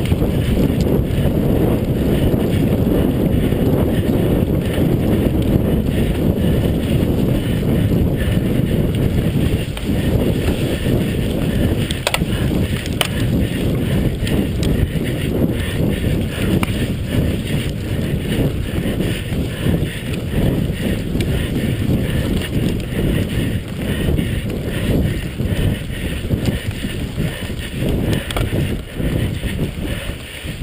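Wind buffeting the microphone of a camera riding on a mountain bike, mixed with the rumble of knobby tyres on a rough dirt trail. Now and then the bike gives a brief knock or rattle over bumps.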